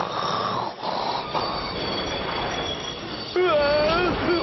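Cartoon snoring from a sleeping boy, two noisy snores in about the first second, over the running noise of a train carriage with a thin, high wheel squeal. A pitched voice starts about three and a half seconds in.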